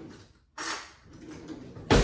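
Kitchen handling noises as a straw is fetched: a brief clatter about half a second in, then a sharp knock near the end, the loudest sound.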